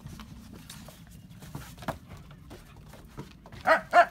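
Dogs playing on a wooden deck, their claws and paws giving light scattered clicks, then two short, loud dog barks close together near the end: a warning to the playing dogs to keep their distance.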